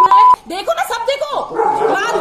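A steady beep censoring a word, cutting off about a third of a second in, followed by a woman shouting angrily.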